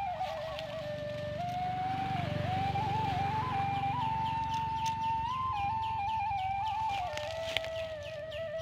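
Background music: a single flute-like melody that steps between long held notes over a low drone, with a run of quick, high chirps repeating through the second half.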